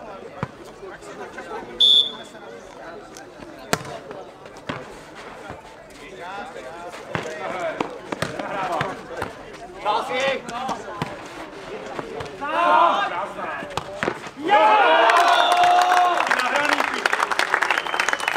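A nohejbal rally: the ball is struck with feet and head and lands with separate sharp thuds, with a brief high tone about two seconds in, while the players call out more and more. About 14 to 15 seconds in, loud shouting and cheering with clapping break out as the winning point goes in.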